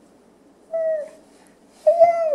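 Baby's high-pitched vocalizing: a short, slightly falling call just under a second in, then a louder, longer one starting near the end.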